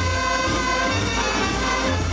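Live Oaxacan wind band (banda de música) playing a dance tune: sustained wind melody over deep bass notes about once a second and a steady percussion beat about twice a second.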